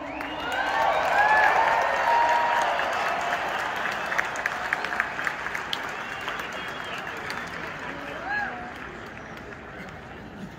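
Large stadium crowd cheering and applauding, with whoops, shouts and scattered sharp claps. It swells within the first two seconds as a song ends, then slowly dies down.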